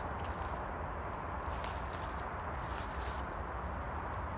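Footsteps through dry undergrowth and brambles, with a few soft, irregular crackles, over a steady low rumble on the microphone.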